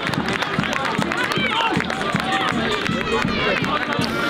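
Small football crowd and players cheering and shouting in celebration of a goal, many voices overlapping at once.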